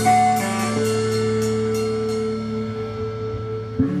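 A band with electric guitars, bass and drums ends a song: cymbal strokes ring over a held chord, then stop, and the chord rings out and fades in the second half.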